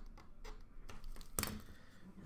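A few light clicks and taps from handling things at a counter, with one sharper click about one and a half seconds in.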